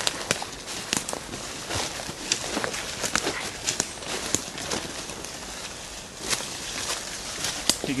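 Footsteps crunching through dry leaf litter and brush on a forest floor, with irregular sharp crackles and snaps underfoot.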